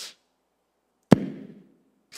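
A single sharp knock about a second in, with a short fading tail.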